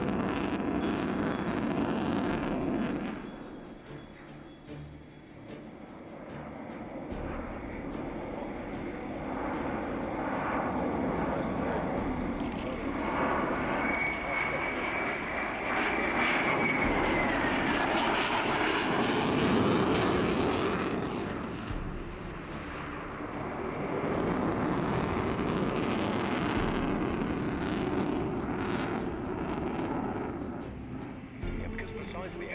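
Jet roar of a Sukhoi Su-27 in display flight, its twin AL-31F afterburning turbofans swelling and fading as it manoeuvres. The roar dips early on and is loudest about two-thirds of the way through. In the middle a high whine holds for a few seconds, then drops in pitch.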